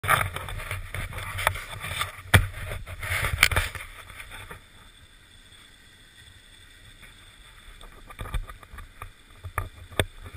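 Rubbing, knocking and wind on a body-worn camera's microphone: loud and rough for the first four seconds with a couple of sharp knocks, then quieter, with scattered clicks and bumps near the end.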